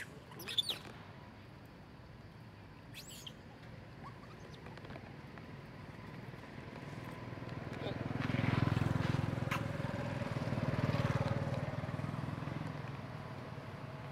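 A motor vehicle passing: its sound grows over several seconds, is loudest in the middle and fades away near the end. Two brief high squeaks come near the start.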